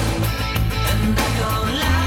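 Electric bass guitar played with the fingers along to a pop-rock backing recording, a low note pulsing evenly under drums and electric guitar, with no vocals.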